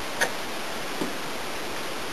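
Steady hiss of workshop room tone, with one light click about a quarter second in and a fainter tick about a second in.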